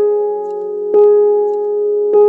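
Slow solo piano music: soft sustained notes ring on, with a note struck at the start and the same note struck again about a second in.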